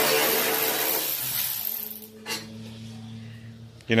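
Cordless drill with a socket extension running steadily as it spins out a fender bolt, its pitch dropping slightly about a second in before it stops about halfway through. A single short click follows.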